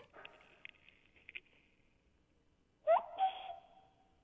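A man imitating a cuckoo's call by blowing a whistle-like note through his hands or mouth, heard over a telephone line. One call comes about three seconds in: a short rising note that settles into a steady held tone, with breathy noise. Faint clicks on the line come before it.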